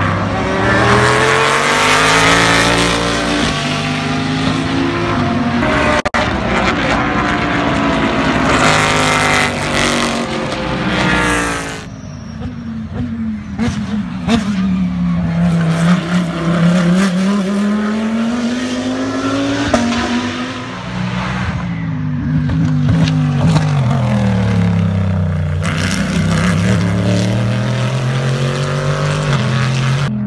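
Race car engines at a track: for the first dozen seconds several cars run past together with their engine notes overlapping and shifting in pitch. After an abrupt change, a single race car's engine drops in pitch as it slows for a corner and rises again as it accelerates out, several times over.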